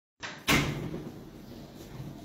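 A single bang about half a second in that fades over a fraction of a second, then low room noise.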